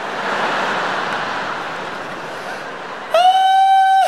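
Large arena audience laughing, dying down gradually. About three seconds in, a man's voice cuts in with a long, high, steady held note.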